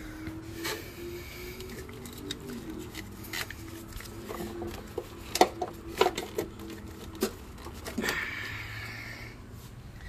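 Handling noise from a wiring harness in plastic split loom being worked through a truck's engine bay: scattered sharp clicks and knocks, loudest about five and six seconds in, over a faint steady hum.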